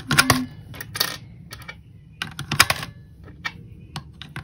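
Pennies pushed one at a time into the slot of a digital coin-counting jar. Each one gives a sharp click or short clatter as it goes through the counter and drops in, about once a second.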